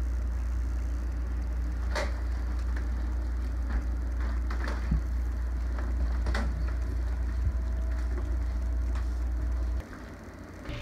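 A steady, loud low rumble with a few sharp clicks and knocks scattered through it. The rumble cuts in and out abruptly at the start and end.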